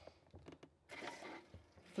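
Faint clicks of the drain valve on a Truma water heater being handled, with a soft rush of water starting to drain from the heater.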